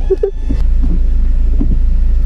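Low steady rumble of a car's running engine heard inside the cabin, growing louder about half a second in.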